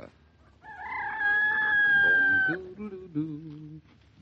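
A rooster crowing as a radio sound effect: one long, held call that starts about half a second in and lasts about two seconds, followed by a few shorter, lower sounds near the end.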